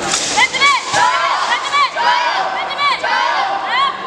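Several high-pitched voices shouting short, overlapping calls of encouragement over and over as a wushu competitor starts his routine.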